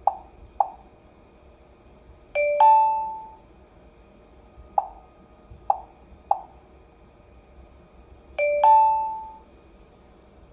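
HOMSECUR H700 alarm panel's touchscreen beeping at each key press: two quick beeps at the start, three more in the middle, and twice a louder two-note ding-dong chime lasting about a second. The chimes fall where the Save key is pressed to store the delay setting.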